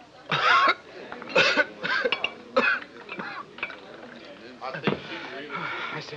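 A man coughing and spluttering in about four sharp bursts after gulping down a shot of strong liquor, then quieter voices.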